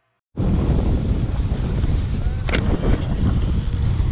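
Wind buffeting the microphone of a camera carried by a skier going downhill, a loud steady rushing that starts abruptly after a moment of silence.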